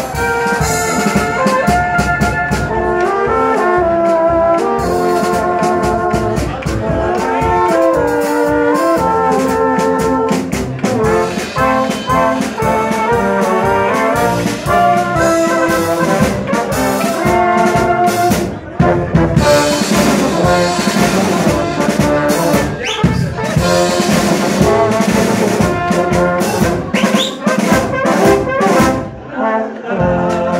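Czech folk brass band playing live: trumpets, flugelhorns and tubas carry a stepping melody over a steady beat of drum and cymbal hits.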